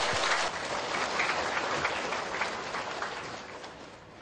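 Audience applauding, dying away steadily toward the end.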